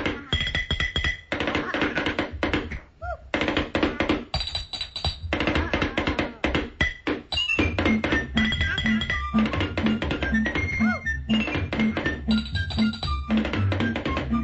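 Fast, busy drumming of rapid hits and rolls over a 1930s dance-band cartoon score. From about eight seconds in, a steady low beat comes in about twice a second.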